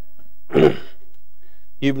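A single throat clearing, one short harsh burst about half a second in.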